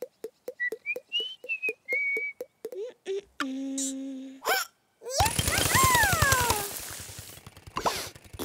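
Cartoon sound effects: a short whistled tune over quick, even ticks, about five a second, for the first three seconds. About five seconds in comes a loud rumbling noise with falling whistle-like tones, which fades over the next two seconds.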